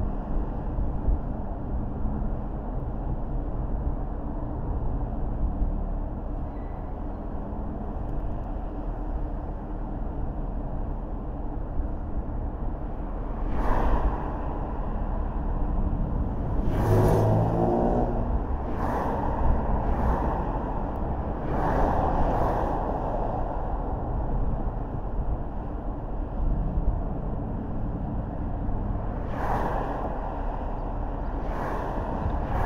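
Car driving at low speed on a city street, a steady rumble of engine and tyres on the road, with a few short knocks, most of them in the middle of the stretch and one near the end.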